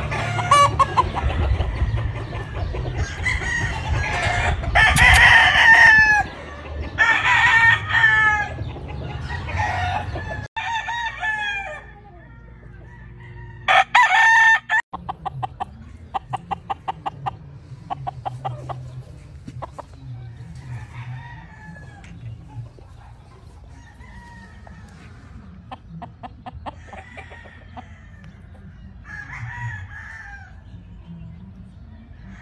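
Several gamecock roosters crowing and clucking, often overlapping. The calls are loudest in the first few seconds and again briefly a little before the middle, then fainter and more spaced out.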